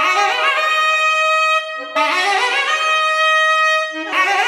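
Nadaswaram, a long double-reed wind instrument, playing a phrase of quick ornamented notes that climbs and settles on a long held note with a bright, reedy tone. The same phrase sounds twice, about two seconds each.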